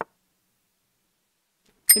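Silence, broken by a short click at the very start and, near the end, a bright bell-like electronic ding whose tones ring on briefly.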